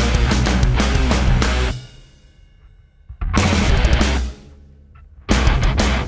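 Heavy metal riff on high-gain electric guitar from a Revv Generator MkIII amp through a Celestion Vintage 30 speaker, close-miked with a Shure SM57, with bass and drums: the guitar is heard in a Zilla 2x12 cabinet, then in an ENGL 4x12 when the band comes back in. The band stops short under two seconds in, hits one held chord about a second later, and comes back in full about five seconds in.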